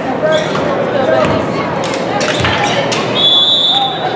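Crowd chatter in a gymnasium with a volleyball bouncing on the hardwood floor, then a referee's whistle, one short steady blast near the end, signalling the serve.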